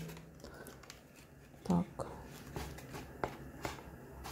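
Faint rustling of newspaper and a thin plastic blister pack being handled, with a few light clicks.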